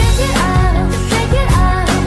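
Recorded pop song playing: a steady beat under a short melodic figure that repeats.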